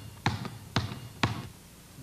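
A round basketball bounced on a hard floor: three even bounces about half a second apart.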